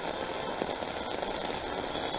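Heavy rain falling on a road as a steady, even wash of noise, mixed with traffic driving past on the wet surface.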